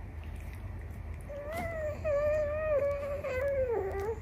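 Baby's voice: one long, drawn-out whiny call, held fairly level for about two and a half seconds and dropping in pitch at the end.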